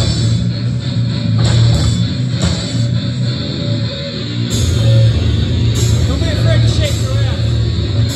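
Death metal band playing live: heavily distorted electric guitars, bass and drums, loud and continuous.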